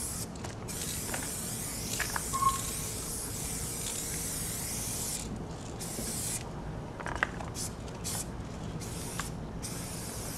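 Aerosol spray-paint can spraying: one long continuous hiss for about five seconds, then a series of short bursts. A few faint clicks come in between.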